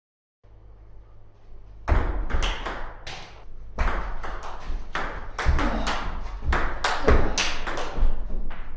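Table tennis rally: the ball clicks sharply off rubber-faced rackets and the tabletop in quick alternation, roughly two hits a second, starting about two seconds in, over a low steady hum.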